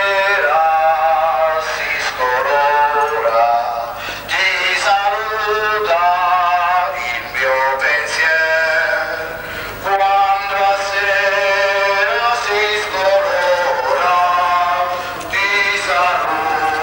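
Voices singing a hymn in drawn-out phrases of a few seconds each, with short breaks between them.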